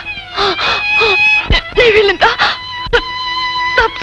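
Melodramatic film score holding long sustained notes, over a person's anguished crying in short, broken wails.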